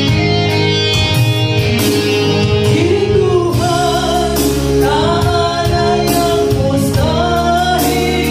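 A woman singing a gospel song into a microphone, with vibrato on the held notes, accompanied by an electronic keyboard playing sustained chords.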